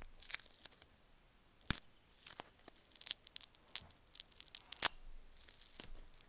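Close crackling, tearing-like rustle from fingers rubbing and handling a wired earphone cord at its inline microphone, with scattered sharp clicks; the sharpest click comes about two seconds in and another just before five seconds.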